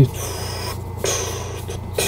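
A man breathing in twice between sung lines, two short hissing breaths over a low steady hum.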